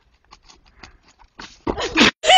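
Faint knocks and scuffs of hooves on dirt as a goat and a cow tussle, then a loud, short cry with a bending pitch near the end.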